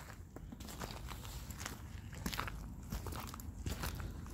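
Footsteps crunching on loose gravel, with irregular crunches all through.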